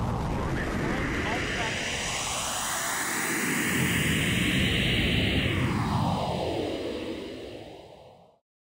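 Roar of a Soyuz rocket launch, a loud rushing noise with a whoosh that sweeps up in pitch over several seconds and then drops sharply, fading out near the end.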